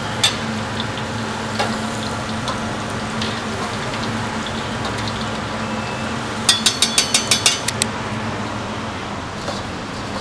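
Battered chicken and potato pieces sizzling in deep oil in a wok, over a steady low hum, as a stainless steel spider strainer and ladle scoop them out. A little past halfway, about a second of rapid ringing metal clinks as the ladle knocks against the strainer.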